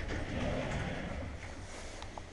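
A click, then the curved glass sliding door of a quadrant shower enclosure rumbling on its rollers as it is slid open, fading out over the second half.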